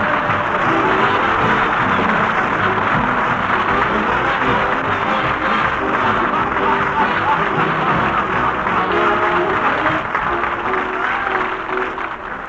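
Studio orchestra playing music with studio audience applause under it, fading out near the end.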